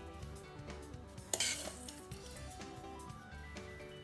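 Background music playing, over which a spoon clinks and scrapes against a glass baking dish as vermicelli is spread in it, with one sharp clink about a second in.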